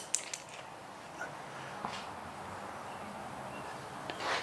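A few soft clicks and rustles of handling, bunched in the first half second with two fainter ticks a little later, over a faint steady room hum.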